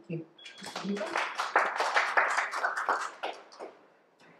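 Small audience applauding, a dense patter of many hand claps that swells about half a second in and fades out before the end.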